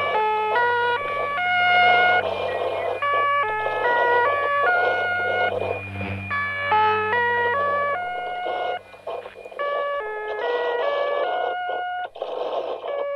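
Shortwave numbers-station interval signal: a repeating melody of short electronic beeping tones, one note after another, over a steady low hum and faint hiss.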